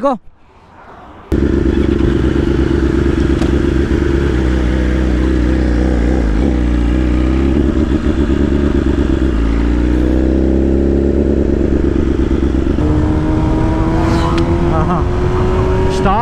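BMW S1000RR's inline-four engine starts loud about a second in, pulling away and accelerating, its note climbing and then stepping as it moves up through the gears.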